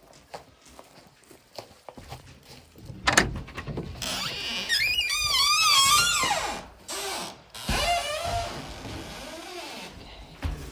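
A wooden door knocks once, then a peafowl gives a long, wavering, high-pitched call over a loud rustle, followed by shorter calls and a thump as the handled peacock is set down.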